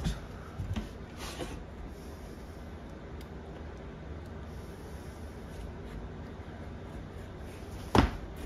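Utility knife scoring a curved line across a rigid-core vinyl plank: faint scraping strokes over a low steady hum. A sharp crack comes right at the end as the scored plank is snapped along the curve.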